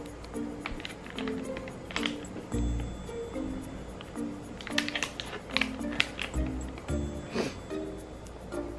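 Background music: a bouncy tune of short repeating notes over a bass line, with a few brief crinkles of a foil blind-bag packet being handled.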